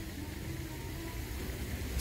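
A pause in the talking, filled only by a steady low background rumble with no distinct event.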